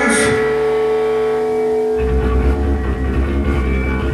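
Punk/hard rock band playing live through the amps, an instrumental stretch with no vocals. An electric guitar chord is held and ringing, then the bass comes in heavily about halfway through.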